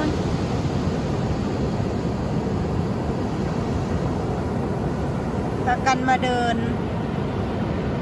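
Continuous roar of ocean surf breaking on a sandy beach, the sea running high: a steady rushing noise with no breaks.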